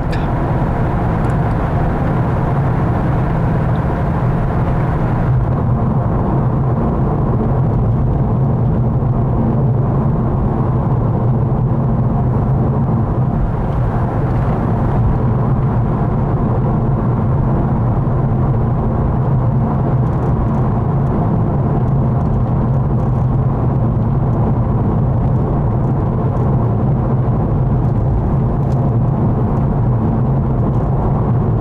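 Steady engine hum and tyre noise inside the cabin of a car cruising on a highway, with a lighter hiss above that eases a few seconds in.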